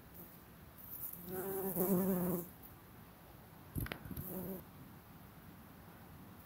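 A bumblebee buzzing in flight close by, a low wavering drone that swells for about a second and a half starting about a second in. A sharp click comes near four seconds, followed by a shorter, fainter buzz.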